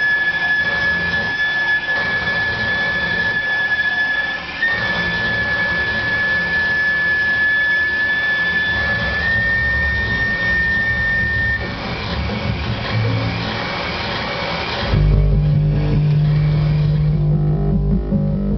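Live electronic noise music: a dense, rough noise texture with a steady high whistling tone that steps up slightly in pitch twice and stops about twelve seconds in. About three seconds before the end the sound switches suddenly to a loud low hum.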